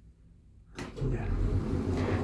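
SÛR SuperSûr traction elevator setting off after a floor call: a click just under a second in, then a steady low rumble as the car gets moving.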